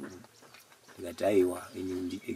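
A man's voice in short pitched phrases after a brief pause, low and slightly sing-song.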